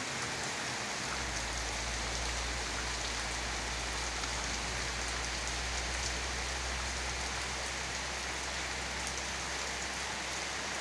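Heavy rain falling steadily on a jackfruit tree's leaves and bare earth, an even, unbroken hiss.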